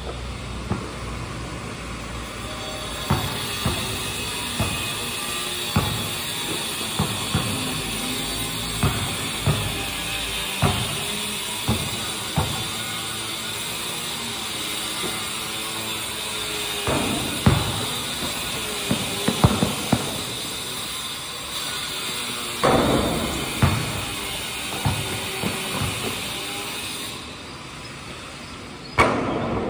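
Basketball bouncing on a concrete court, sharp thuds about once a second that come more closely together later on, over a steady high hiss and faint music in the background.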